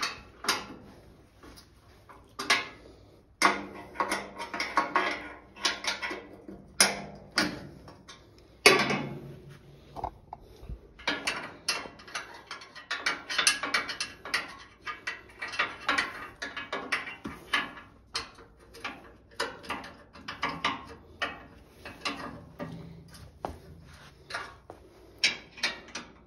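Hex key working the bolts of a mini excavator's cover panel: a run of small metallic clicks and scrapes as the key turns and is reset, with a few sharper knocks.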